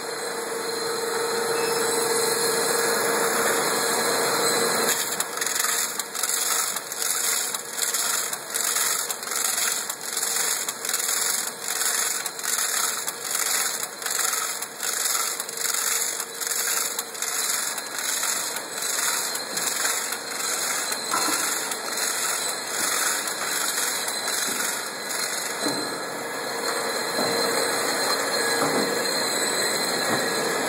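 Sleeve labeling machine running with a steady motor hum and high whine. For most of the stretch its sleeve cutting and applying head works in a regular rhythm of about one and a half strokes a second as shrink sleeves are put onto tennis-ball cans. Near the start and end only the steady running is heard.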